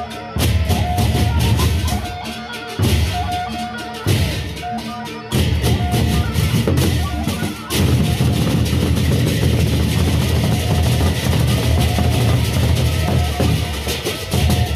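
A gendang beleq ensemble of large Sasak barrel drums beaten with sticks, loud and fast. The drumming comes in surges with short breaks in the first few seconds, then runs unbroken from about five seconds in.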